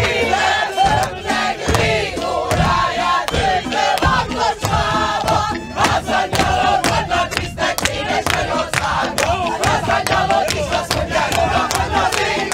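A group of actors singing and shouting together in a lively song, with a violin playing along and sharp, regular beats keeping time.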